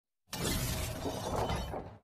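A sudden shattering crash sound effect that starts about a third of a second in and dies away gradually.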